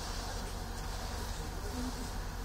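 A steady low buzzing hum.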